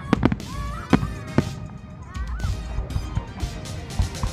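Aerial fireworks bursting: four sharp bangs within the first second and a half, over a steady rumble of the display, with pitched sounds gliding up and down between them.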